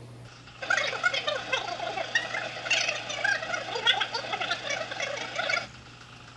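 A rapid, chattering run of short animal-like chirps and calls, many overlapping, starting about half a second in and cutting off suddenly about five and a half seconds in.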